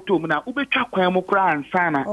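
Speech only: a correspondent talking over a telephone line, the voice thin and narrow as phone audio is.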